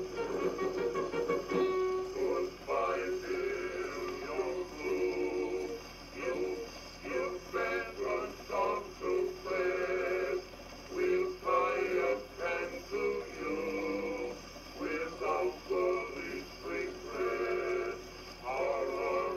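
An Edison Diamond Disc phonograph playing a 1917 acoustic record of a male singer and male chorus singing a medley of U.S. Army camp songs, in phrases with short breaks.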